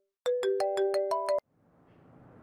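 A mobile phone's ringtone or alert tone: a quick run of bright chiming notes stepping up in pitch, lasting about a second and cutting off abruptly.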